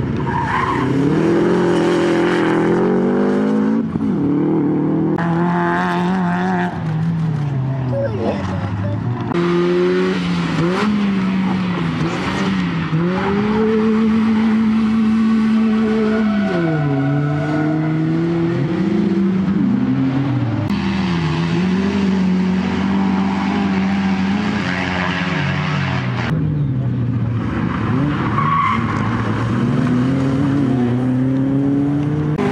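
Rally sprint cars driven hard through corners one after another: first a Subaru Impreza, later BMW 3 Series cars. Their engines rev high and drop again and again with gear changes and braking, with tyre squeal in the corners.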